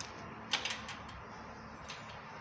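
Motorcycle key and steering lock clicking: a quick cluster of small metallic clicks about half a second in as the key is worked in the lock, then one faint click near the end.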